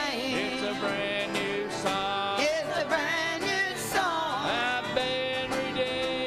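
Country gospel music: several voices singing together to a strummed acoustic guitar.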